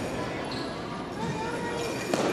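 Footfalls of a wushu athlete running across a carpeted competition floor in a large hall, with faint voices in the background.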